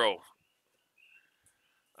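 A man's voice finishing a word, then near silence with one faint, brief chirp-like sound about a second in.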